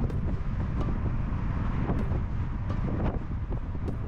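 Road and wind noise from a moving vehicle: a steady low rumble with wind buffeting the microphone, and a few faint clicks.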